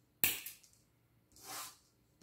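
A single sharp snip as the tag end of monofilament fishing line is cut off at a freshly tied hook knot. About a second later comes a softer hiss that swells and fades.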